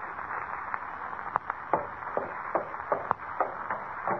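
Radio-drama footsteps sound effect, a character climbing stairs: a steady run of footfalls, about three a second, over the hiss of an old transcription recording.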